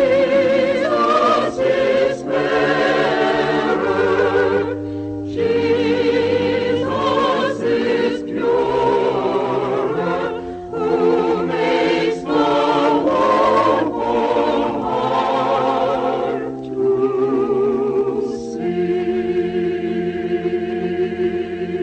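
A choir singing a slow hymn, held notes with vibrato over a sustained lower accompaniment.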